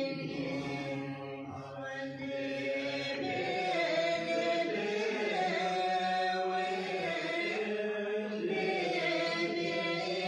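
Several voices chanting or singing together in long held, slowly shifting notes.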